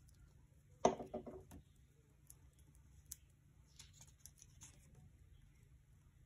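Hands handling paper and a glue stick on a tabletop: a short cluster of knocks about a second in, then faint paper rustles and light clicks.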